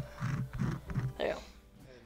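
A person chuckling softly, then a couple of spoken words; the sound dies down near the end.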